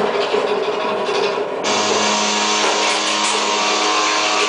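Live electronic noise music from keyboards and electronics: a dense hiss with steady droning tones. About a second and a half in it switches abruptly to a fuller, brighter wall of noise over a low drone.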